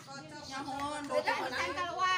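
Indistinct chatter of several women talking at once, no single voice clear.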